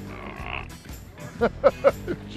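A short hiss at the start, then three short, loud voiced sounds from a person about a second and a half in.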